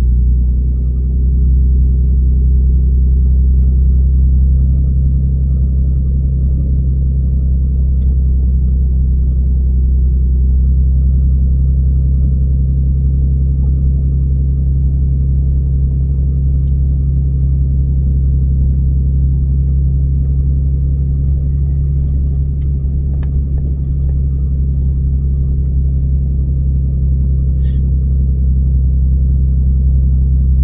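Car or light truck driving slowly on a gravel road, heard from inside the cab: a steady low engine and road drone. A few brief clicks stand out in the second half.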